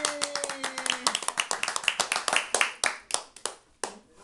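A small group clapping by hand, fast and uneven at first, then thinning out and stopping just before the end, with one last clap. A single voice holds a drawn-out note over the first second.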